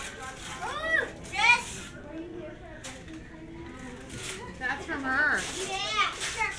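Children's voices and chatter: short high-pitched calls about a second in, then murmur, and more talk near the end.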